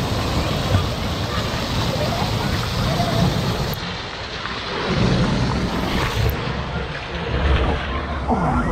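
Water rushing and splashing through a water-park tube slide and the spray pool, water dashing close against the microphone.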